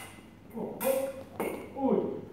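Steel sabre blades striking together several times, sharp clicking and ringing contacts, with voices talking at the same time.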